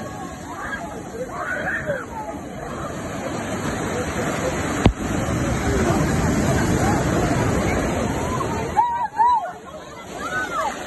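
Surf breaking and washing up the sand, a rushing sound that swells through the middle, with people's voices calling out over it and a single sharp knock about five seconds in.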